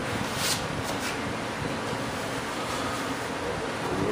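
Steady hum of a running fan, with a brief faint scrape about half a second in.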